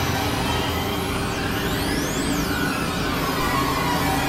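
Experimental electronic drone and noise music from synthesizers: a dense, steady wash with low held drones and high tones gliding up and down across one another.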